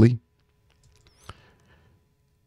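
The tail of a man's word, then near silence broken by a single faint click a little past a second in.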